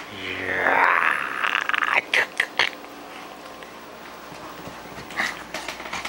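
Small Yorkshire terrier growling and snarling in excited play, loudest and longest in the first two seconds. Then come three quick, short sharp sounds, and two more near the end.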